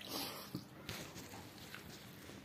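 Slurping a dripping handful of watery fermented rice (pakhala) from the fingers, a short loud slurp right at the start, followed by a couple of wet mouth clicks and soft chewing.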